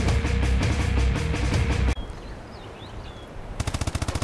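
Rapid automatic gunfire over a steady held tone, cut off abruptly about two seconds in. A quiet stretch with faint bird chirps follows, and rapid gunfire starts again near the end.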